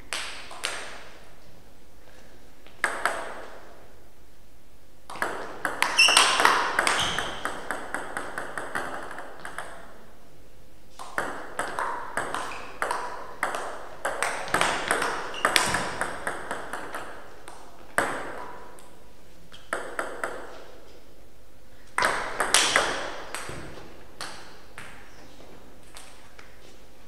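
Table tennis play: the plastic ball clicking off the bats and the Donic table in quick runs during rallies, each click with a short ring, and single bounces in the gaps between rallies.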